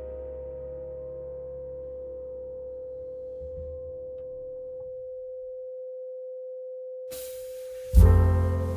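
A steady pure 'frequency' tone a little above 500 Hz, the kind of tone played under sleep and affirmation music. Soft background music fades out under it about five seconds in, leaving the tone alone, and the music comes back in at the very end.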